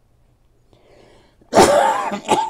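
A person's loud, harsh cough about one and a half seconds in, after a faint breath in.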